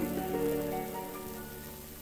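Last held notes of a dance orchestra's introduction dying away about halfway through, over the steady hiss and crackle of a 1942 shellac 78 rpm record.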